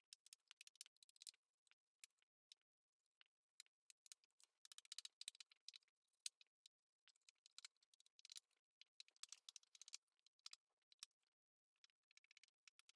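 Very faint, irregular tapping and scratching: a foam-tipped ink applicator dabbed on an ink pad and rubbed along the edges of paper, sponging ink on.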